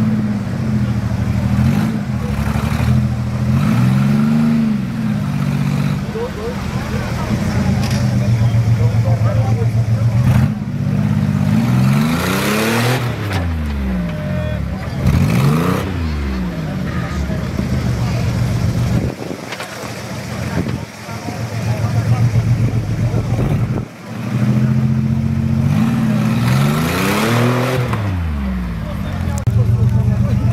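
Engine of a lifted off-road 4x4 SUV pulling at low speed as it crawls through and climbs out of a dirt pit, its note rising and falling in repeated revs, with a few sharp knocks along the way.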